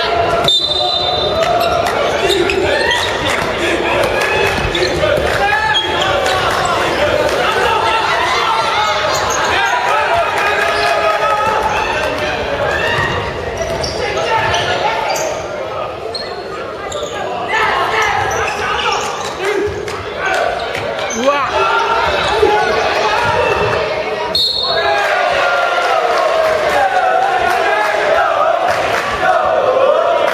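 High-school basketball game on a wooden gym court: the ball bouncing, with continual shouting voices from players and the bench ringing in the hall. Two short, high referee's whistle blasts sound, one just after the start and one late on.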